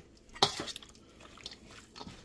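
A single sharp metal clink about half a second in, then a few faint light knocks: a stainless steel mixing bowl being gripped and shifted by hand.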